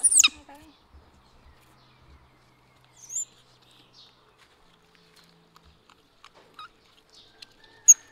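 Baby macaque screaming in short high-pitched squeals: a loud one falling in pitch at the start, a brief squeak about three seconds in, and a sharp screech near the end.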